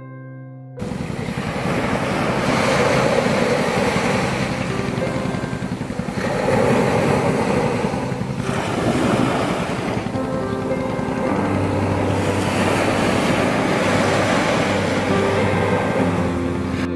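Sea surf breaking on a beach, starting suddenly about a second in and swelling and easing every three to four seconds, with soft background music underneath.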